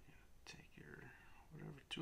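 Quiet speech from a man, little more than a mutter or whisper, in short broken snatches.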